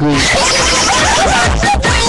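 A swoosh sound effect, then voices over background music with a steady beat, as in a radio station jingle played on air.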